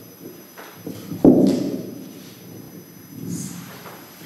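Handling noise on a live handheld microphone: a few small knocks and one sharp, loud thump a little over a second in.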